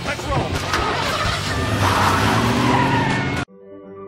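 Loud film soundtrack of a car with tyre squeal and shouting voices, which cuts off abruptly about three and a half seconds in. Soft music with long held notes follows.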